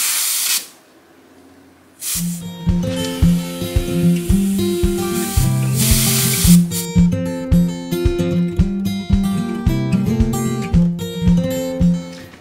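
Compressed air hissing briefly as the air chuck is pressed onto the trailer tire's valve stem, then plucked-guitar background music in a steady, regular pattern from about two seconds in, with another short hiss of air about halfway through.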